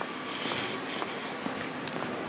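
Steady outdoor town-centre background hum, typical of distant traffic, with faint footsteps on stone paving about every half second and a short sharp click near the end.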